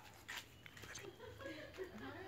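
Faint, distant voices of people talking, with a few light clicks near the start; otherwise quiet.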